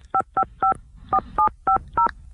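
Touch-tone telephone keypad dialing a seven-digit number: three short two-tone beeps, a brief pause, then four more.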